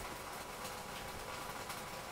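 Steady background noise between spoken phrases, with no distinct event.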